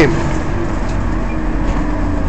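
Steady interior noise of a city bus: an even rumble with a faint steady hum underneath.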